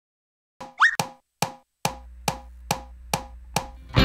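Lead-in to a children's song: a short rising squeak, then a steady wood-block-like tick a little over twice a second, seven ticks in all, with a low sustained note joining about two seconds in.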